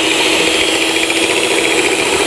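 Electric stand mixer running steadily on low speed, its beaters turning through cream cheese and condensed milk in the bowl: a steady motor whir.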